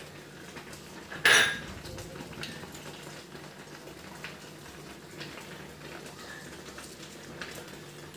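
A single short metallic clink against a stainless steel pressure cooker pot about a second in, then only faint scattered ticks over a low background.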